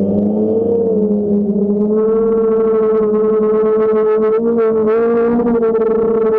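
DJI Phantom quadcopter's motors and propellers humming steadily, heard through the GoPro mounted on the drone, several close tones drifting slightly in pitch as it manoeuvres; the sound grows brighter about two seconds in.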